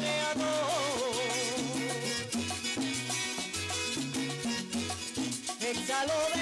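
Puerto Rican jíbaro string band playing an instrumental passage: a cuatro-led melody that bends and slides near the start, over a stepping bass line and steady rhythm strumming and percussion.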